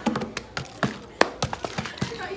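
Plastic Aquafina water bottle being squeezed and twisted in the hands, giving a string of sharp, irregular crackles and clicks, about ten in two seconds.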